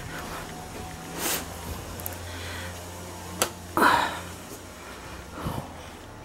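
Steady low hum, with a few short noisy bursts and one sharp click about three and a half seconds in.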